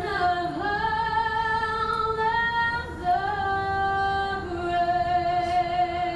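A single woman's voice singing a slow melody in long held notes, sliding between pitches. It is the national anthem sung during the presentation of the colors.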